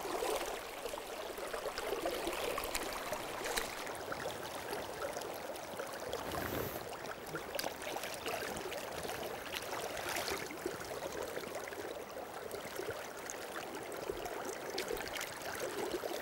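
River current flowing steadily around a wading angler, with a few faint splashes and ticks.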